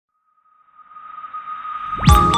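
Intro sound effect: a single steady high-pitched tone under a whooshing riser that swells steadily louder from near silence.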